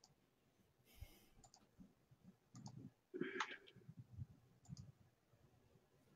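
Near silence broken by a few faint, scattered clicks, with one brief louder noise about three seconds in.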